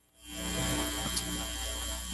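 A steady electrical hum with hiss, fading in about a quarter second in and holding level.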